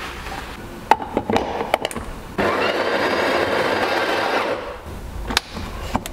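A few sharp clicks and knocks of a metal portafilter being handled, then an espresso grinder runs steadily for about two seconds, grinding coffee beans into the portafilter, and stops.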